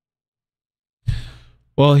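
A man sighs, one breathy exhale close to the microphone about a second in, fading over about half a second.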